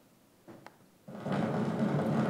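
Cassini's Radio and Plasma Wave Science (RPWS) antenna data from a ring-grazing orbit, turned into sound and played back over loudspeakers. A couple of faint clicks come about half a second in, and just after a second in a dense rushing noise with a steady low hum starts suddenly and keeps going.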